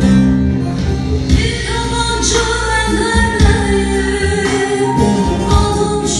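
Live amplified music: a singer over instrumental backing with a steady bass, the vocal melody coming in about a second and a half in.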